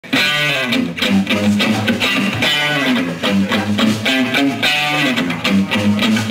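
Live rock trio playing an instrumental opening: electric guitar and bass guitar over a drum kit, no vocals.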